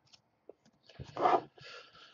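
A stack of Topps Chrome trading cards being handled: a few faint clicks, then a tap about a second in and a short rustle of the cards, with a fainter scrape after it.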